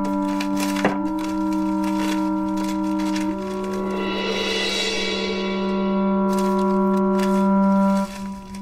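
Dramatic background score of long held synthesizer tones: a low sustained note under higher notes that step upward twice, with a high shimmering swell in the middle. A few light rustles and clicks of paper being handled sit under the music.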